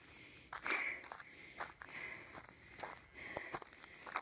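Several faint footsteps crunching on unpaved dirt and gravel, irregularly spaced, a step every half second or so.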